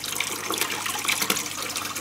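Aquarium water running steadily through the siphon of a JBL AquaEx 10-35 gravel cleaner as it drains the tank into a bucket, a continuous trickling hiss.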